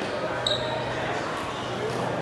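Echoing sports-hall ambience of background crowd chatter during a foot shuttlecock match, with a short high squeak about half a second in and a couple of faint light knocks near the end.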